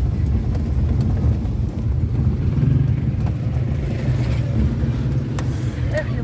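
Car engine and road rumble heard from inside the cabin while driving: a steady low rumble, with a few faint clicks.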